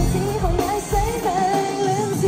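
Live Cantopop from a girl group in concert: women singing a melody over the band, with a bass beat about twice a second, heard through the arena's sound system.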